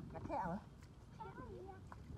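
A child's voice making two wavering, drawn-out calls without words, the first about half a second in and the second in the second half.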